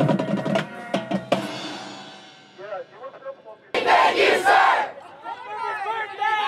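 Marching band's brass and drumline finishing a phrase with a few sharp drum hits, the final chord ringing away over the next second or so. About four seconds in comes a loud burst of cheering and yelling from the band members, followed by chatter.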